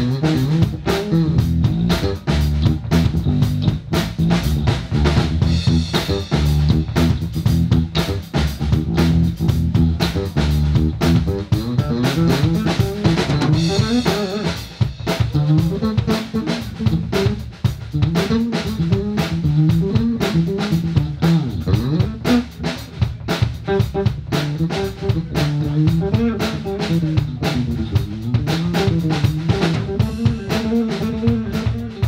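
Electric bass guitar solo with drum kit accompaniment: plucked bass notes carry a moving melodic line low in pitch while the drums keep time with frequent hits.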